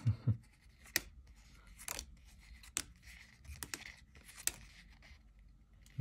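Small cardboard picture cards being shifted in the hand, one moved behind another: quiet paper rustling with a sharp flick or tap about once a second.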